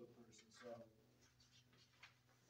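Near silence: room tone, with a faint voice murmuring in the first second.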